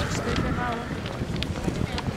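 People talking on a busy pedestrian street, with scattered short clicks and general street noise in the background.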